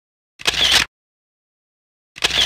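Camera shutter sound effect, heard once about half a second in: a sharp click followed by a short whir, lasting about half a second.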